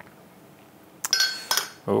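Metal twist-off lid of a glass jar of pesto being unscrewed, a short scraping, ringing clink about a second in.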